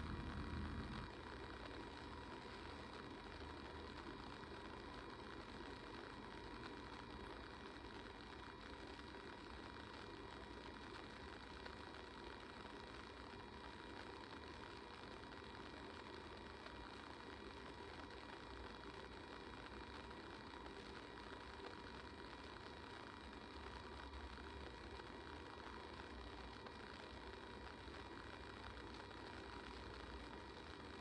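Faint, steady room tone: a low even hiss with a faint hum, with nothing else happening.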